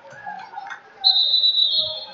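A referee's whistle blown once for about a second, starting about a second in, with a slight warble and a small drop in pitch as it ends.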